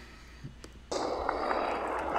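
Quiet room tone. About a second in, a steady hiss of outdoor background noise from a roadside phone recording of a cobbled race section starts suddenly.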